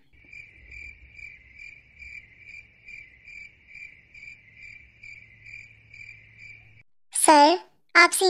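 Cricket-chirp sound effect: a steady high chirp repeated about two and a half times a second, which cuts off suddenly near the end. A brief voice-like sound follows just before the end.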